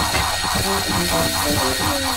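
Cartoon soundtrack: music with an even, fast whirring pulse about four times a second under a steady high tone, the sound effect for the robot spinning round. A falling pitch glide comes near the end.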